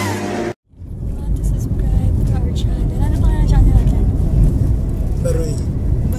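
Music cuts off about half a second in, and after a brief gap comes the steady low rumble of a moving car heard from inside the cabin, with faint voices over it.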